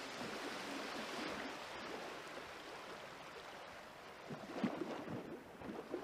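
A soft, steady rushing sound like water, with a few faint low thuds about four to five seconds in.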